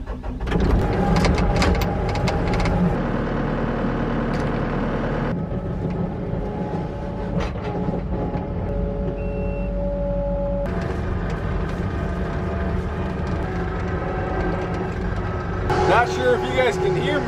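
Skid-steer loader's diesel engine running steadily. In the first few seconds, sharp clicks come from the hydraulic quick-couplers of a brush-cutter attachment being connected. The engine tone changes abruptly twice, about 5 and 11 seconds in.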